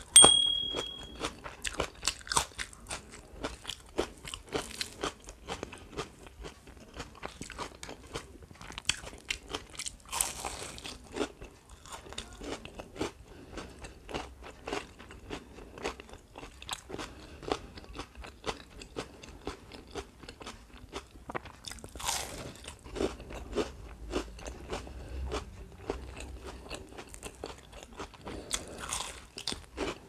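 A person biting and chewing crunchy fried pakoda fritters close to the microphone: many short, sharp crunches with chewing between them. A brief steady tone sounds right at the start.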